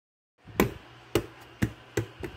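A small toy basketball bouncing on the bottom of a cardboard box: four sharp bounces starting about half a second in, each coming sooner than the last as the ball settles.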